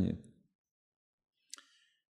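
A man's voice trailing off at the end of a sentence, then silence broken by one faint, short mouth click about one and a half seconds in, as his lips part before he speaks again.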